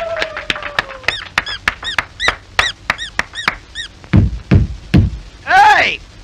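Cartoon sound effects of impatient fingers drumming on a table: a rapid run of taps, about five a second, with little rising-and-falling squeaky notes among them. Three heavy thumps follow, then a loud vocal cry near the end.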